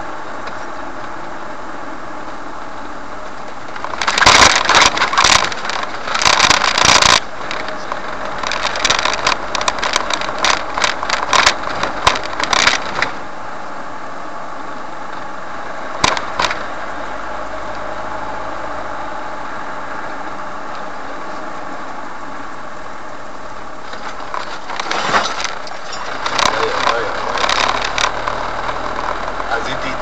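Steady running drone of a vehicle's engine and tyres heard from inside the cab while driving, broken by a few louder, irregular spells of noise.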